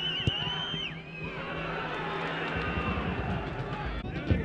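Footballers' shouts and calls echoing across a near-empty stadium, with one sharp kick of the ball about a third of a second in.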